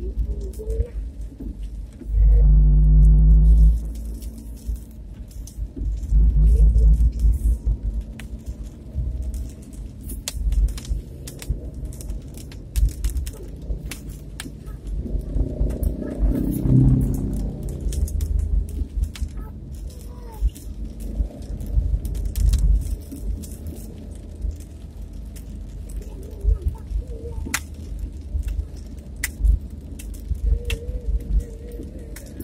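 Wind buffeting the microphone with low road and engine rumble during a ride on a wet road, broken by many sharp clicks. A loud pitched tone joins the rumble about two seconds in, and a second pitched sound comes around sixteen seconds.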